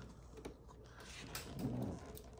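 Faint handling noise: light ticks and rubbing as the phone recording the video is picked up and moved into position.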